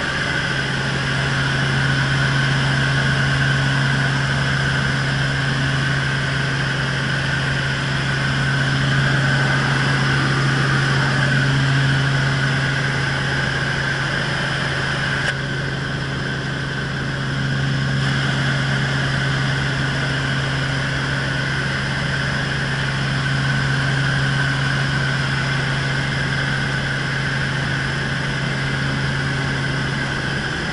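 Cabin noise of a Robinson R44 helicopter in cruise flight, heard from inside the cockpit: a steady engine and rotor drone with a strong low hum.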